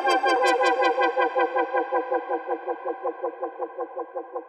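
Prophanity software synthesizer, an emulation of the Sequential Circuits Prophet 5, sounding a pitched patch that pulses about five times a second. Its bright upper tones die away and the whole sound fades steadily.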